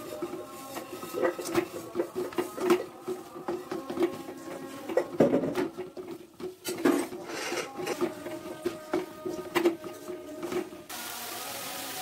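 Wooden spatula stirring and scraping shredded cabbage in an aluminium pan, with irregular knocks and scrapes against the pan, over a steady background tone. A steady hiss comes in near the end.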